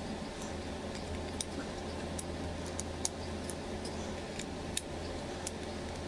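Scattered light ticks of a precision screwdriver turning the tiny screws in a Realme C15 smartphone's midframe, about a dozen irregular clicks over a steady low hum.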